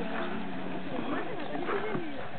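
Indistinct voices, with a horse cantering on a sand show-jumping arena, its hoofbeats faint.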